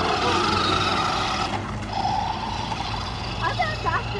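A steady engine drone, with voices talking briefly near the end.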